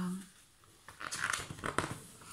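Paper pages of a picture book being flipped several in quick succession: a dry, fluttering rustle that starts about a second in and lasts about a second.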